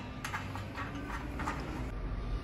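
Light metallic ticks and clicks from a sheet-steel sewing machine stand bracket and its screw being handled, about half a dozen small taps spread over two seconds, over a faint low hum.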